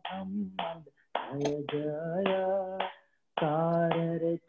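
A man singing a devotional chant, holding long notes that bend in pitch. The voice breaks off briefly about a second in and again about three seconds in.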